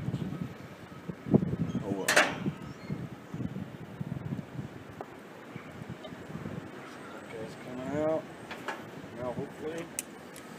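Handling noises of a brass valve fitting being worked by hand and with pliers: low rubbing and scraping with scattered metal clicks, the sharpest about two seconds in. A brief voice-like sound, such as a hum, comes near the end.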